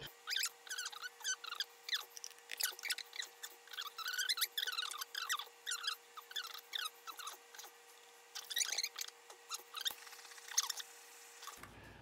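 A plastic palette knife spreading wet flow extender (thinned acrylic paint) over a stretched canvas: a run of short, irregular wet scrapes and squelches, with a faint steady hum underneath.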